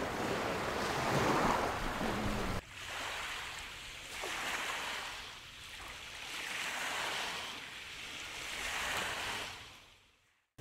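Small waves washing onto a pebble shore, swelling and falling back every two to three seconds. The sound changes abruptly about two and a half seconds in and fades out at the end.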